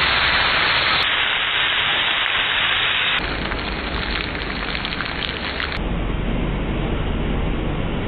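Hot-pan sizzling of a grilled snakehead fish, a loud steady hiss that changes abruptly about a second in, about three seconds in and near six seconds. In the middle part it crackles more sharply while beaten egg is poured over the fish.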